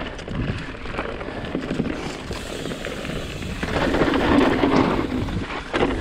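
Mountain bike riding fast down a loose dirt and rock trail: tyres crunching and rattling over dirt and stones, with clatter from the bike and a rumble of wind on the camera's microphone. It grows louder about two-thirds of the way through.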